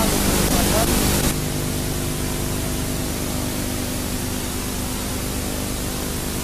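Steady noisy stadium crowd ambience under heavy hiss and a low hum from an old television broadcast recording. Just over a second in, the high hiss drops away suddenly, leaving a duller steady noise.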